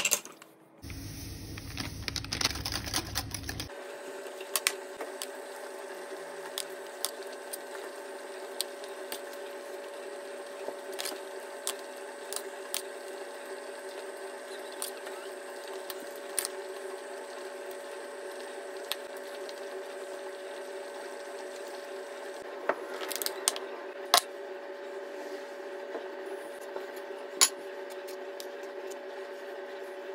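A steady hum holding two or three fixed tones, with scattered light clicks and taps, a small cluster of them near the end, of the kind a utensil makes against a plate while cream is spread.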